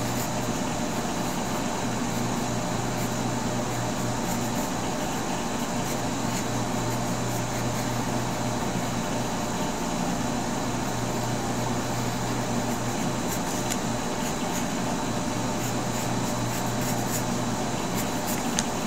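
Steady low hum and hiss of room background noise, with faint scratches of a pencil drawing on paper now and then, more of them near the end.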